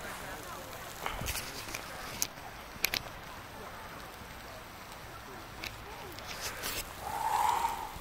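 Faint outdoor background noise with a few short, sharp clicks scattered through it, and a brief distant voice-like sound near the end.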